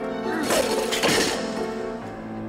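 Sustained film-score music with held chords. About half a second in, a sudden crash and clatter cuts through, lasting about a second with two peaks, then dies away under the music.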